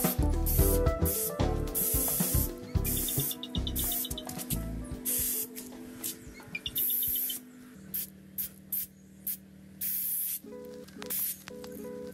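Aerosol spray paint can hissing in repeated short bursts, some about a second long, as paint is sprayed onto a wall. Background music with a beat plays underneath.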